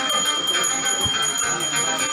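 A bell ringing rapidly and continuously, with music beneath it.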